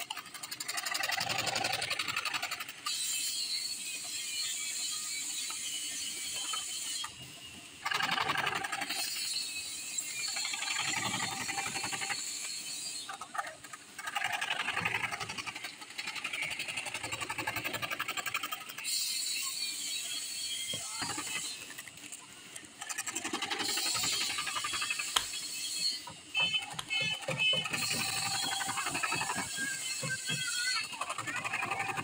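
Power jigsaw ('chapaka') blade cutting through MDF board with a fast buzzing chatter. It stops and starts several times as the cut is steered around the pattern.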